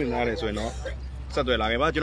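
Speech: a person talking in two short stretches, over a steady low hum.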